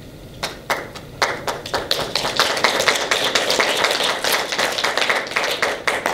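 Audience applauding: a few scattered claps at first, building into steady applause about two seconds in, then dying away at the end.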